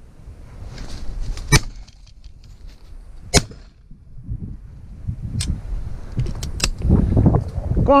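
Two shotgun shots about two seconds apart, the first about a second and a half in, from an over-and-under shotgun fired at crows flying over the hide. Toward the end, wind buffets the microphone with a growing low rumble, and a short shout comes at the very end.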